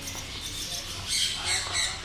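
Three short, harsh, high-pitched bird squawks in quick succession, starting about a second in.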